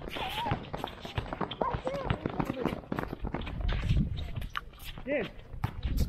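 A group of players sprinting across an outdoor hard court on their toes, with quick patters of sneaker footfalls and shouted calls over them.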